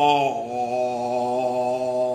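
A man singing one long held note, unaccompanied and chant-like. The pitch steps down about a third of a second in, then stays steady without vibrato.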